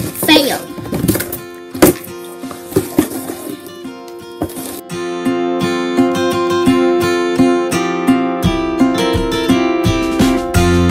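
Sharp clicks and rustling of cardboard and scissors being handled for about the first half. Then acoustic guitar background music starts, with steady plucked notes.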